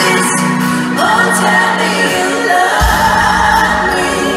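Live pop song in a large arena, heard from the crowd: a woman singing lead into a microphone over the band, with a deep bass hit a little under three seconds in.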